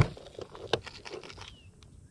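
Plastic lure packages being handled in a cardboard box: light scattered clicks and crinkling, with one sharper click a little under a second in, growing quieter in the last half second.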